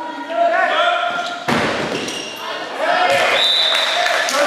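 Players' shouts echoing in a sports hall, and, about one and a half seconds in, a single sharp smack as the giant kin-ball is struck.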